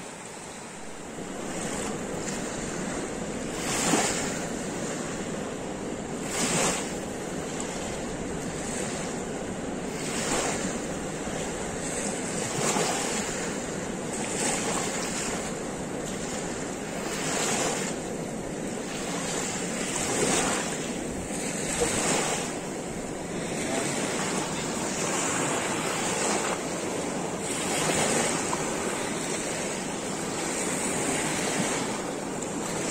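A wide, fast river's small waves washing onto a sandy bank, swelling and falling back every two to three seconds over a steady rush of current, with some wind on the microphone.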